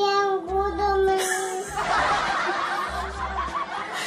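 A voice holds one long wavering note, then laughter breaks out about two seconds in and slowly fades, over background music with a repeating low bass beat.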